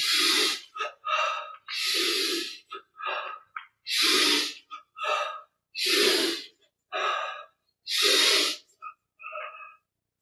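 A man's forceful breathing paced to a Yogoda energization exercise with side arm swings: a loud breath about every two seconds, five in all, with fainter breaths between.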